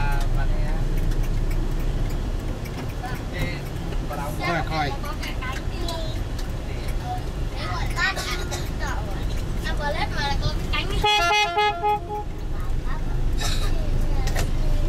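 Steady low engine and road rumble heard from inside a moving vehicle. About eleven seconds in, a vehicle horn sounds in a quick run of about six short toots.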